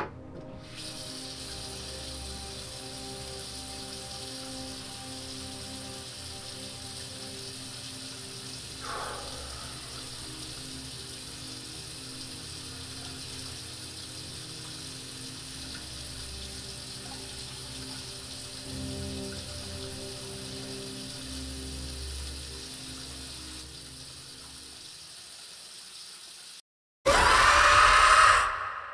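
A bathroom tap running steadily into the sink under a low droning horror score. Near the end the sound drops out for a moment, then a sudden loud jump-scare burst cuts in.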